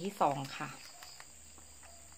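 A woman says a couple of words in Thai, then faint handling of ribbon under a steady high-pitched background tone.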